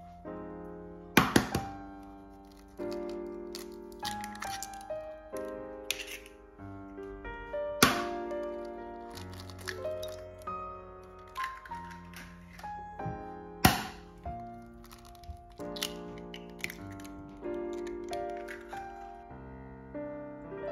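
Soft piano music, cut by sharp knocks of eggshells being cracked against a glass bowl. The three loudest come about 1, 8 and 14 seconds in.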